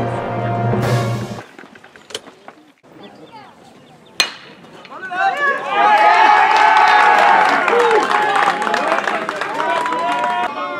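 Background music cuts off about a second and a half in. Near the middle there is one sharp crack of a metal baseball bat hitting the ball, and about a second later spectators start cheering and shouting loudly, carrying on to the end.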